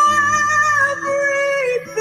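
A woman singing a long held, wordless note in a gospel worship song, with a slight vibrato, sliding down and breaking off near the end.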